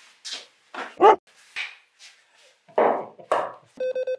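A dog barking in several short bursts, then two short electronic beeps near the end.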